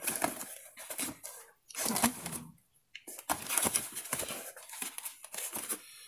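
Tight parcel wrapping being crinkled and torn open by hand, in rough bursts of crackling with a short break about halfway through.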